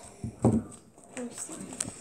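Scissors snipping a plastic slime packet open, heard as a few short, light clicks, under quiet children's voices. There is a brief, louder low sound about half a second in.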